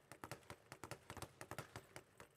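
Speed bag being punched and rebounding off its overhead platform: a fast, even run of faint taps, about seven or eight a second.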